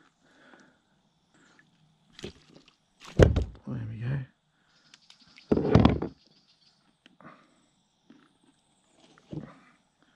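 Short muffled bursts of a man's voice and a few knocks on the plastic kayak hull as a freshly landed bass is handled.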